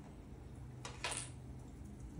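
Quiet room tone with a low steady hum, and one brief, faint handling sound about a second in, fitting a game token or order marker being moved on the board.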